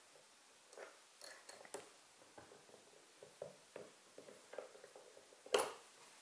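Stop collar on a pocket-hole drill bit being tightened with a hex key: faint scattered metallic clicks and ticks, with one sharper click about five and a half seconds in.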